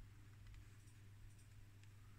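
Near silence: room tone with a faint low hum, and one soft click at the very start.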